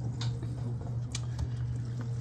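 Foamy citric acid and baking soda rust-remover solution fizzing faintly in a plastic tub, its soap bubbles crackling with a few light ticks, over a steady low hum.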